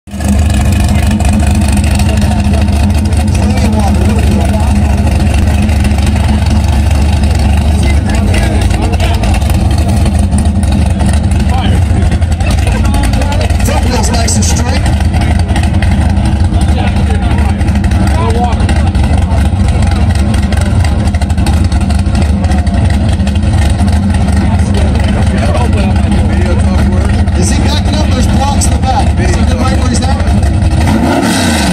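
V8 engine of a Chevrolet Chevelle SS muscle car idling, loud and steady, waiting in the burnout box.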